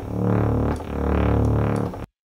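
Deep synthesizer bass notes played from a keyboard, a new note roughly every second, each one's tone brightening and then darkening as its filter opens and closes.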